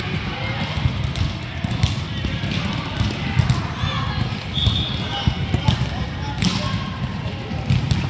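Futsal ball being kicked and bouncing on a hardwood court in a large gym, with repeated sharp knocks and a brief high squeak about halfway through, over children's voices calling in the hall.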